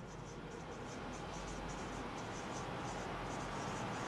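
Marker pen writing on a whiteboard: a steady faint rubbing with short, high squeaks at the pen strokes, several a second.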